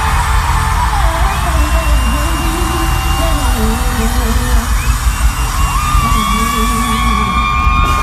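A female pop singer singing live over a loud band with heavy bass, while the audience yells and cheers throughout. Her voice glides between notes and holds a long high note near the end.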